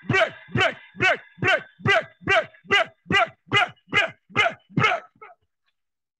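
A man's voice shouting one word, 'Break!', over and over in rapid prayer, about two or three shouts a second, each falling in pitch. The shouting cuts off a little after five seconds in.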